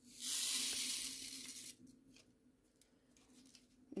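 Small plastic bag of diamond-painting drills being handled, a hissing plastic rustle lasting about a second and a half, then a few faint clicks.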